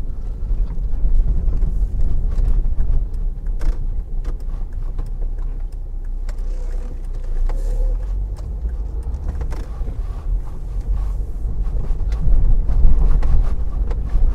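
Car driving slowly, heard from inside the cabin: a steady low engine and tyre rumble with occasional faint clicks, growing a little louder near the end.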